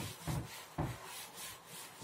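Chalkboard duster rubbing chalk off a blackboard in quick back-and-forth strokes, about three a second.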